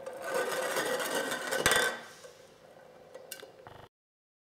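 Empty aluminium soda can rolling across a tabletop, drawn by the static charge on a nearby balloon: a steady rolling rattle for about two seconds, with a sharp knock near the end of the roll, then it goes quiet and the sound cuts off.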